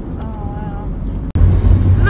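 Road and engine noise inside a moving car, a steady low rumble. A little past a second in it jumps to a louder, deeper drone of the car on the freeway.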